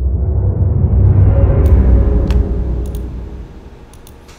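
Intro logo sound effect: a deep rumbling swell that builds quickly, peaks about halfway through and then fades away, with a few sharp ticks in the middle.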